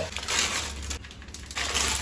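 Dry instant noodle cakes crushed by hand inside their plastic packets: crackling and crinkling in two bouts, one about half a second in and another near the end.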